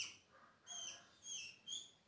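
A small bird chirping in the background: three short, high chirps, each falling in pitch, about half a second apart.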